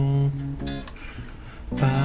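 A man singing to his own guitar strumming. A low held sung note ends just after the start, a brief note follows, the guitar carries on alone for about a second, and near the end the singing comes back in with a long "aah".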